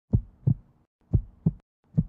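Heartbeat sound effect: deep double thumps in a lub-dub rhythm, about one pair a second, two pairs in all.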